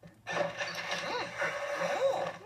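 Bed springs creaking and groaning loudly as a heavy person settles down onto the mattress, a cartoon sound effect heard through a TV speaker. It starts about a quarter second in and carries on throughout, with a few rising-and-falling squeals in it.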